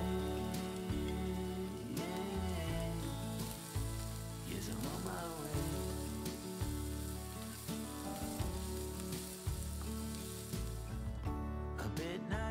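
Chopped onion and grated carrot sizzling in oil in a frying pan while being stirred with a wooden spoon, under steady background music. The sizzling stops about a second before the end.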